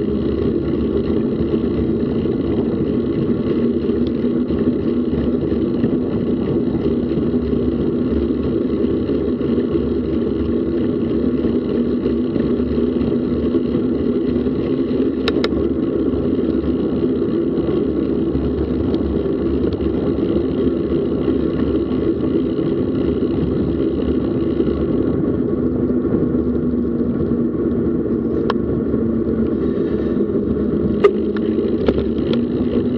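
Steady rumble of wind and road noise on a bicycle-mounted action camera's microphone while riding, with a sharp click about halfway through and another near the end.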